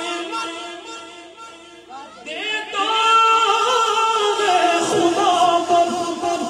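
A man reciting a naat unaccompanied through a microphone, holding long sung notes. A louder new phrase with gliding pitch starts about two seconds in, after a brief dip.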